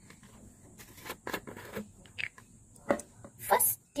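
Plastic water bottle being handled and its plastic screw cap twisted off, giving a run of small clicks and crinkles from the thin plastic. The loudest crackles come about three seconds in and near the end.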